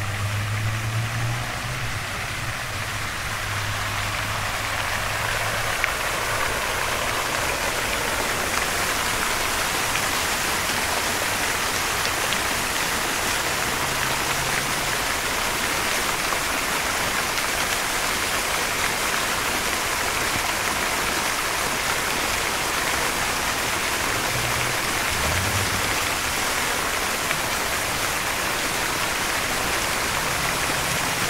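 Many water jets of a fountain splashing down into its pool: a steady hiss of falling water that grows louder over the first few seconds, then holds even.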